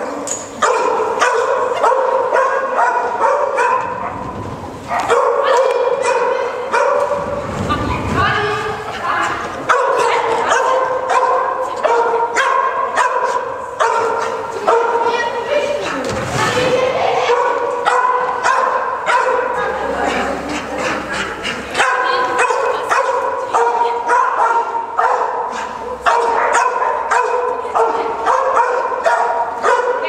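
A dog yipping and barking over and over in quick, high-pitched yaps, several a second, almost without a break.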